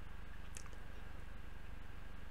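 Quiet room tone: a low, steady hum, with a faint click about half a second in.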